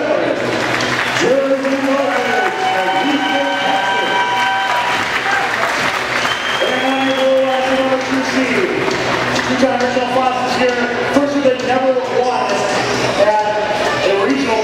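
An announcer's amplified voice over a public-address system, drawing words out into long held calls, over a crowd cheering and applauding in a large echoing gymnasium.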